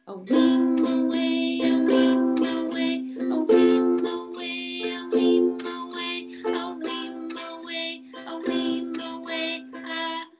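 Ukulele strumming chords in a steady down-up strum pattern, about two strokes a second, over ringing chord tones.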